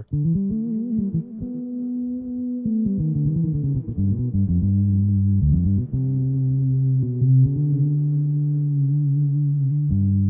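Sampled electric bass from the Native Instruments Session Bassist: Prime Bass plugin, played from a keyboard through a synth filter effect so that it sounds like a synth bass. Several long held low notes, changing pitch every second or two.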